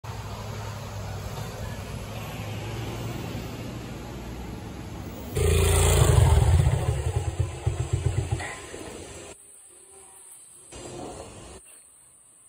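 A steady low street hum, then suddenly about five seconds in a motorcycle engine running loud and close, its throb pulsing unevenly and dying away after about three seconds, as when the engine is switched off.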